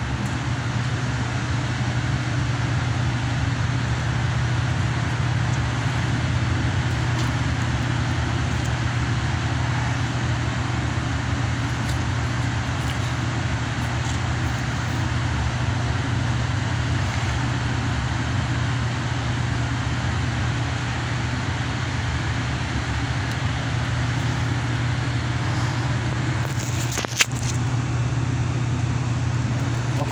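A steady machine drone: a low hum under an even hiss that holds constant throughout, with one sharp click about 27 seconds in.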